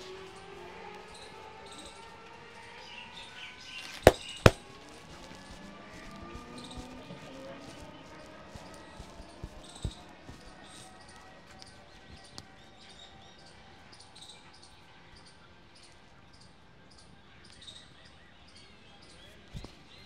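Two sharp, loud hand smacks about half a second apart during a barber's back and shoulder massage, with a softer smack a few seconds later, over faint background noise.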